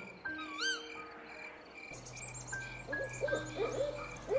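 Quiet background soundscape with a few soft held tones. About two seconds in, a run of short hooting calls starts, several a second, with faint high chirps above them.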